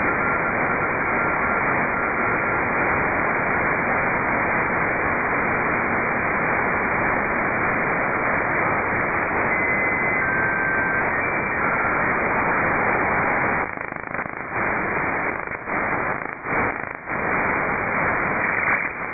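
Shortwave radio static heard through a software-defined receiver (RTL2832 dongle with a Ham It Up upconverter) while it is tuned across the 10.5–11 MHz range. The audio is a dense hiss passed through a narrow filter of about 2.4 kHz, with a few brief whistling carriers. About three-quarters of the way in, the hiss turns quieter and flickers as the tuning moves to a new frequency.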